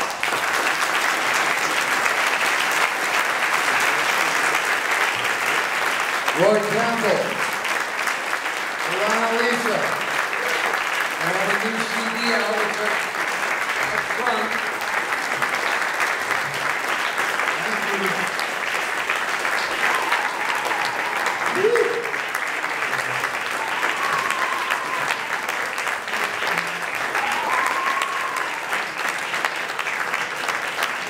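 Audience applauding steadily as the piece ends, with a few voices calling out over the clapping.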